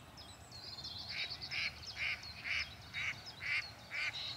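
Birds calling in the background: a short call repeated about twice a second from about a second in, with faint, higher twittering song above it in the first half.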